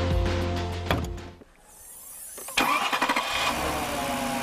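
Background music fades out. After a brief hush, the Porsche Cayenne's 4.5-litre V8 starts up about two and a half seconds in, catching suddenly and running on.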